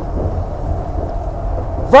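Steady low engine rumble of an idling truck, heard inside its cab.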